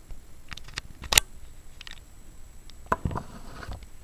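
Handling noise: a few sharp clicks and taps, the loudest about a second in and another near three seconds in, followed by a short low rustle.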